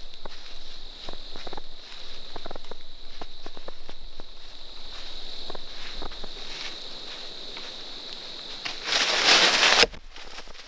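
Irregular crunching steps in dry fallen leaves, over a steady high-pitched tone. About nine seconds in, a loud rustling noise lasts about a second and cuts off suddenly.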